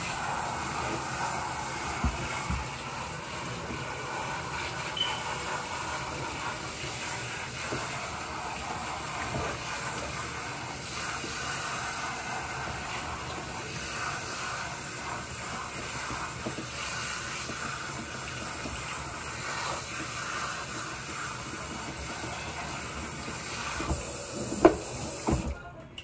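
Kitchen sink pull-out sprayer running steadily, spraying water onto a person's hair and into the sink as the hair is rinsed.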